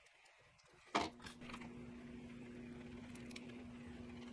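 A single sharp click about a second in, then a faint steady low hum with a few small ticks from hands working at the bench.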